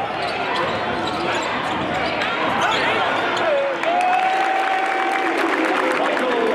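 A basketball being dribbled on a hardwood court, under the steady noise of an arena crowd, with voices calling out; one drawn-out call comes about four seconds in.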